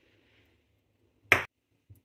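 Near silence broken by one sharp click about a second in, the small white dish being set down on the hard worktop, then a faint tick just before the end.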